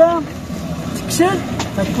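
A man speaking in short bursts, with a steady outdoor background hum filling the quieter stretch in the middle.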